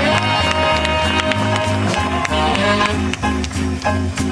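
Big band jazz ensemble playing a swing arrangement: saxophones and brass in sustained chords over a steady low bass line and sharp drum and cymbal ticks.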